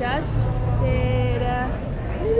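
A woman speaking, over a steady low rumble.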